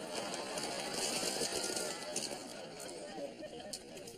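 Studio audience laughing while a tub of chopped tomatoes is poured over a man's head and he gasps. The noise is heaviest in the first half and eases off towards the end.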